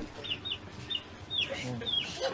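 A bird's short, high chirps, each sliding down in pitch, about six in two seconds, over a faint voice.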